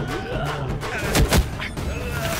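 Two heavy fight-scene hit sound effects, kicks or blows, about a quarter second apart a little over a second in, over a background music score.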